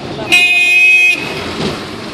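A vehicle horn sounds one steady blast of just under a second, starting about a third of a second in, over the hum of street traffic.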